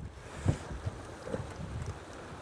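Wind noise on the microphone out on an open boat, a steady rushing haze, with a soft knock about half a second in.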